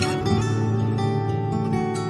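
Instrumental background music: a string of plucked notes that start one after another and ring on over held tones, with no voice.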